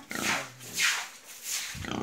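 Pigs grunting and sniffing at a trough in a few short, breathy bursts.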